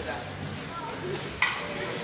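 A single sharp metallic clink of iron dumbbells knocking together as they are taken from a lifter, about one and a half seconds in, with a short ring after it.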